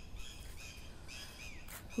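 Faint bird chirps, short and repeated, over a low steady background hiss.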